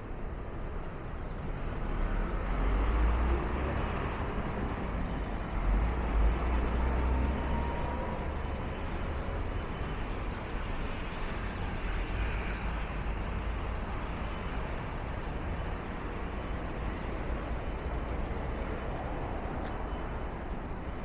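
City street traffic: a steady background of road noise with cars passing on the adjacent road, swelling loudest a couple of seconds in and again around six seconds.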